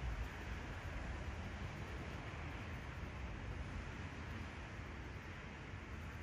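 Graphite pencil shading on paper: a steady, scratchy hiss of the lead rubbing back and forth as a dark tone is built up.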